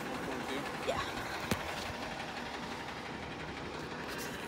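Fire truck engine idling steadily, with faint voices in the background and a sharp click about one and a half seconds in.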